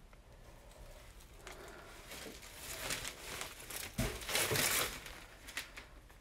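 Plastic garbage bag crinkling in irregular bursts as it is handled, loudest about four to five seconds in.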